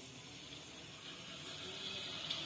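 Faint steady hiss of background noise, with a high hiss growing slightly louder in the second half and no distinct event.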